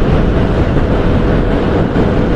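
TVS motorcycle running at a steady cruising speed, its engine hum mixed with wind rushing over a helmet-mounted microphone.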